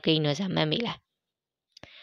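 A voice speaking for about the first second, then a pause broken by a single sharp click near the end.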